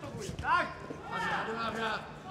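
Raised voices calling out over the arena, with a few short thumps in the first half-second as the fighters clash and step on the mat.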